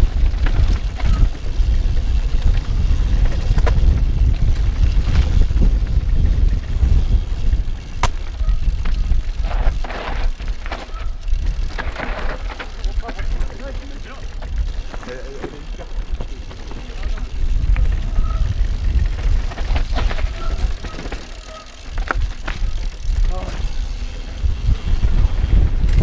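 Mountain bike ridden fast down a rough dirt trail, with heavy wind rumble on the helmet-mounted microphone and the bike rattling, with frequent sharp clicks and knocks from stones and the frame. It eases briefly near the end, then picks up again as the bike rolls onto gravel.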